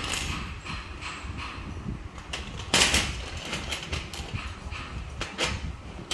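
Metal bangles being handled, clinking against one another and a glass tabletop in scattered sharp knocks, the loudest about three seconds in, over a low rumble.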